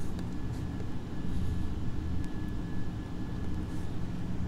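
Steady low background rumble with a faint, thin high tone over it and a few faint ticks.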